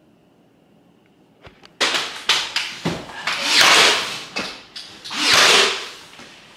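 Plank flooring being laid by hand. After a quiet start come several sharp knocks and clicks, then two longer rasping sounds of about a second each that swell and fade.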